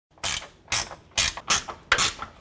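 Hand ratchet wrench turning a bolt, about five rapid clicking strokes as it is swung back and forth.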